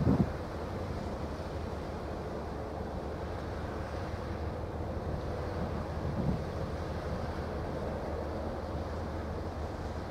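Wind blowing on the microphone: a steady low rumble over a hiss of open-air noise, with a faint steady hum underneath. There is a brief low bump right at the start and another about six seconds in.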